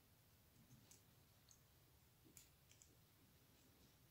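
Near silence with a few faint, brief clicks from fingers handling a small plastic 1/6-scale M16 rifle accessory and its fabric sling.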